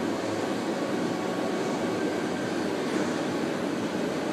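Steady background hum and hiss of running machinery, even in level with no distinct events.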